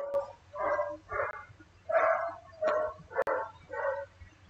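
A dog barking repeatedly in the background: about seven short barks, roughly half a second apart.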